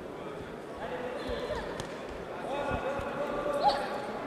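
A boxing hall during a bout: voices calling out from ringside, with dull thuds from the boxers moving and punching on the ring canvas. A short, louder sound comes near the end.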